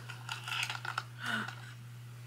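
Light clicks and rustles of a small cardboard box and plastic packaging being handled as a strip of small dental brushes is pulled out, with a brief vocal sound a little past the middle and then quiet.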